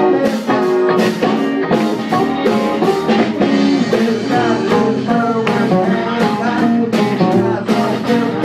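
Live band playing a guitar-led blues number, with a steady beat.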